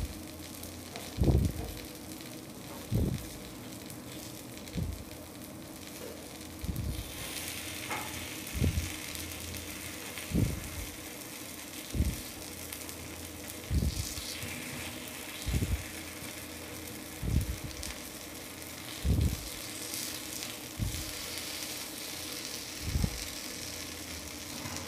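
Kuzhi paniyaram batter sizzling quietly in oil in the cavities of a paniyaram pan. Soft low knocks come about every second and a half to two seconds as the balls are turned over with a wooden stick.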